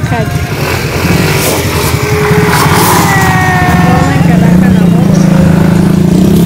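Motorcycle engine running close by, getting louder and holding steady over the last two seconds.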